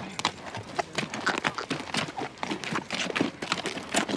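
Horses walking on dry, stony desert sand: irregular hoof steps knocking and crunching, several a second.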